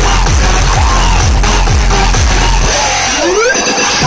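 Electronic dance music played loud over a DJ stage's sound system, with a steady kick beat. About three seconds in the kick drops out and a rising synth sweep builds in its place.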